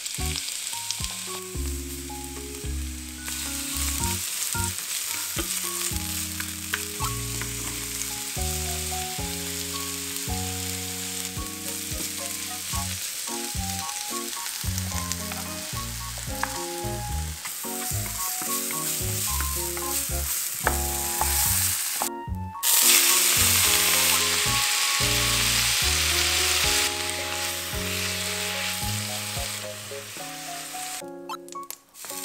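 Oil sizzling in a small non-stick frying pan as red bell pepper strips and then spinach are pan-fried and stirred with a wooden spatula, under background music with a bass line. The sizzle cuts out briefly about three-quarters of the way through and comes back louder.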